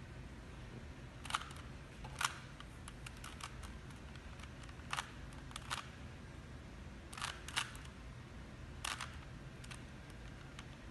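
A plastic 3x3 Rubik's cube being turned by hand. The layers snap round in irregular sharp clicks, a few louder clacks among softer ticks, with pauses of a second or two between bursts of turns.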